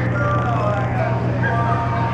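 Glass harp: wine glasses tuned with water, their rims rubbed by the player's fingers, ringing several sustained notes that overlap and blend. A steady low hum runs underneath.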